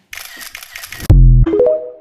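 TikTok end-card jingle: a crackly glitch noise, then a loud deep bass hit about a second in, followed by short synth tones stepping upward.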